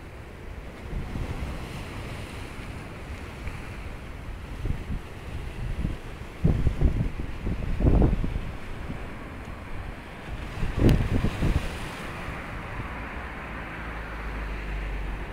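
Sea waves breaking and washing over the rocks of a sea wall, a steady surf noise. Gusts of wind hit the microphone twice, about six and a half to eight seconds in and again around eleven seconds.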